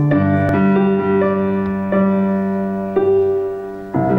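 Slow piano introduction to a song: notes and chords struck about once a second and left to ring, fading briefly near the end before the next chord.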